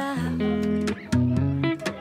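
Background music: a pop song with strummed guitar chords.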